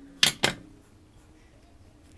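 Two sharp clicks about a quarter second apart, from hands handling the paracord bracelet and scissors.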